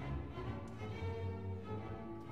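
Classical string orchestra music: violins and lower strings holding sustained bowed notes.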